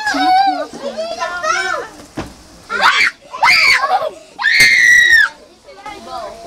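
Young children shouting and shrieking in high, excited voices, a quick run of calls with a long, loud shriek near the end.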